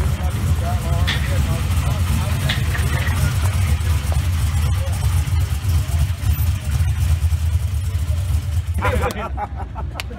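A drag race car's engine idling with a deep, steady rumble as the car rolls up slowly; voices break in near the end.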